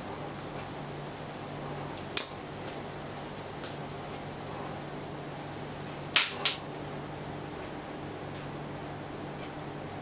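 High-voltage discharge from a microwave-oven transformer at about 2000 volts arcing through a 32-inch Hitachi plasma panel: a steady electrical hum with a hiss. It is broken by a sharp crack about two seconds in and two more close together around six seconds.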